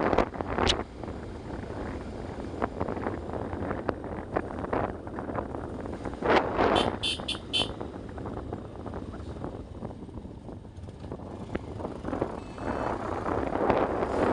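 Bajaj Pulsar motorcycle running along the road, a steady low engine rumble heard from the rider's seat. About seven seconds in, a horn gives four quick high beeps.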